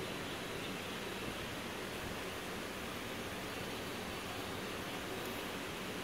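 Steady, even background hiss that does not change and holds no distinct events.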